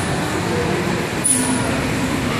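Steady background din of a large indoor play hall, with faint distant voices mixed in and a brief high-pitched tone about a second and a quarter in.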